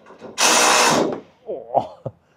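A short burst from a handheld power tool, about half a second long, followed by brief voices.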